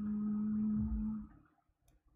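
A person humming one long, steady low note that stops about a second in, followed by near silence with one faint click near the end.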